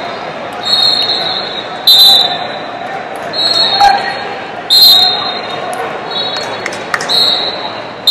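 Echoing sports-hall ambience at a wrestling tournament: voices in the background and a run of short, sharp, high-pitched bursts every second or so, some starting with a hard hit.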